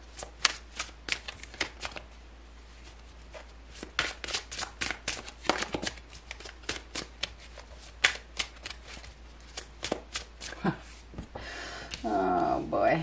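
A deck of tarot cards being shuffled overhand by hand: runs of quick, light card slaps, with a short pause about two seconds in.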